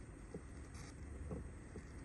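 Faint low steady hum of room tone with a few soft ticks.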